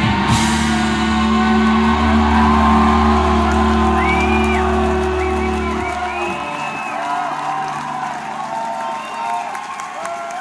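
A live rock band holds its final chord, guitars and bass ringing steadily, then stops about six seconds in. Crowd cheering and whoops rise over the chord and carry on after it ends.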